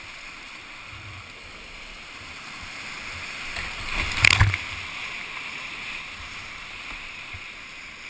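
Steady rush of whitewater rapids heard from a kayak, with a louder splashing surge about four seconds in as the bow drops into foaming white water.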